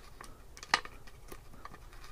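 Light metallic clicks and clinks of stainless steel nuts and a washer being handled and threaded onto a 3/8-inch stainless bolt, a few separate clicks with the loudest just before a second in.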